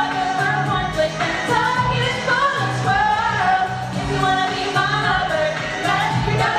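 Stage ensemble singing a pop-style musical number over backing music with a steady, regular bass beat.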